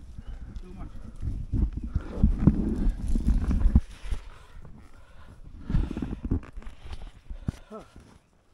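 Irregular low bumping and rustling close to the microphone as the body-worn action camera is jostled, in two rough stretches, with a short voice sound near the end.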